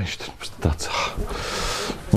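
A man's long breathy exhale, a hiss of breath building over the second half.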